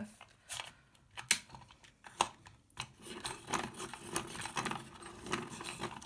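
Hand-cranked kids' zebra pencil sharpener: a few sharp clicks in the first two seconds as the thick coloured pencil is set in it, then a steady rattling, grinding crank from about three seconds in. It doesn't seem to sharpen the thick pencil, which she puts down to the sharpener treating it as sharp enough.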